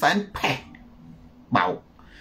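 A man speaking in a few short, clipped syllables with brief pauses between them.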